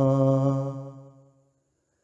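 A man singing an Urdu song without accompaniment, holding the last note of a line on one steady pitch until it fades out about a second in, followed by silence.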